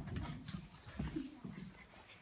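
Low, indistinct murmured voices with scattered knocks and shuffling footsteps as children move about.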